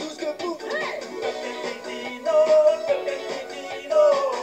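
A cartoon's theme-song music playing from a television, with a melody that glides up and down over a busy backing.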